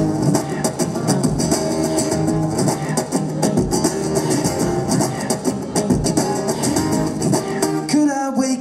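Small-bodied acoustic guitar played live through a PA, strummed chords over a steady percussive beat with sharp rhythmic hits throughout, the instrumental intro of a song.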